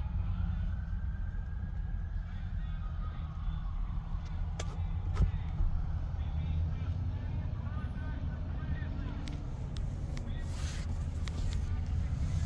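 Steady low vehicle rumble, heard inside a pickup cab, with a few sharp clicks about halfway through.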